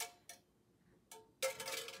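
Thin metal cutout word tapping and clinking against a galvanized tin pail: a few light taps, each with a short metallic ring, then louder handling noise near the end.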